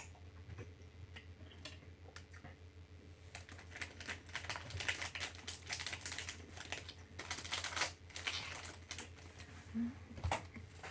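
Faint sounds of eating a gummy candy: a run of quick, soft clicks starting about three seconds in and thinning out near the end, over a steady low hum.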